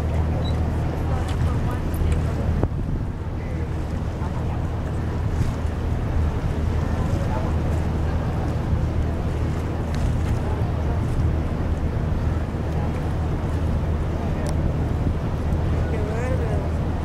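A tour boat's engine running with a steady low drone under wind noise on the microphone.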